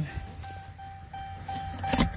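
Electronic warning chime inside a pickup truck's cab, a thin high tone repeating about three times a second, over a low hum.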